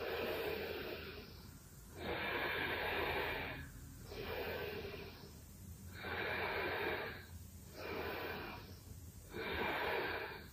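A woman breathing deeply and audibly, about six long, soft breaths in and out over the stretch, each swell lasting around a second.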